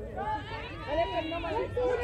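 Several voices calling out and chattering over one another, the shouted chatter of softball players on the field and bench.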